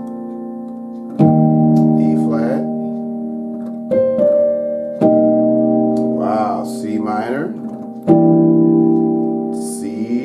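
Piano playing slow, held gospel chord voicings in B-flat major, each chord struck and left to ring and fade. There are four strikes: about a second in, near four seconds with a short passing tone, at five seconds, and at eight seconds. The last is a C dominant ninth.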